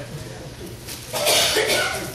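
A person coughing: one loud, harsh cough about a second in.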